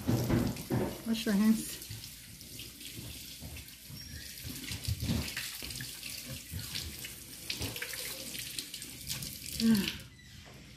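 Kitchen sink tap running steadily, the water splashing over a child's hands as she washes them and into the sink. A short voice is heard about a second in and again near the end.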